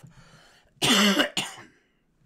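A man coughs to clear his throat, one short two-part cough just under a second in.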